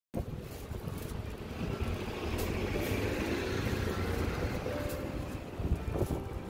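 Passing road traffic in the street, a steady rumble, with the crackle of plastic shopping bags rustling a few times as they are carried.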